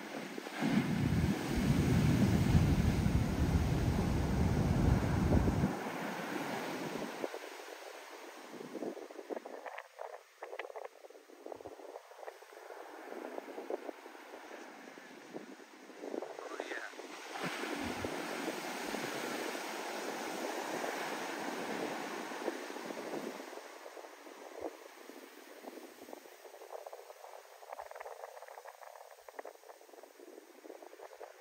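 Heavy shorebreak waves breaking and foam washing up the sand. A loud low rumble runs from just after the start until nearly six seconds in.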